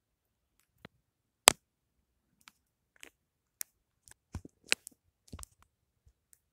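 Scattered light clicks and taps over near quiet, the sharpest about a second and a half in and a quick cluster of them past the middle.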